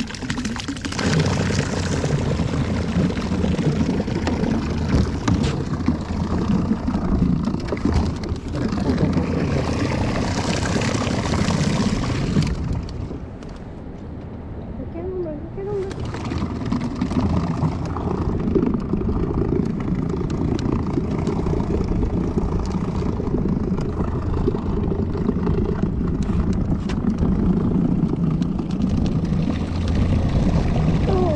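A small boat's motor running steadily, with hiss on top. The sound drops for a couple of seconds about halfway through and then picks up again.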